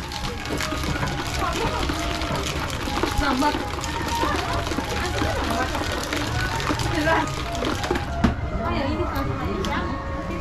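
Ice and drink being shaken by hand in a lidded stainless steel shaker cup, a run of quick rattling clicks, with people talking in the background.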